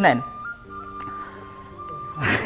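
A simple electronic tune of a few held notes, a higher note stepping up and back down over steady lower notes, with a single sharp tick about a second in.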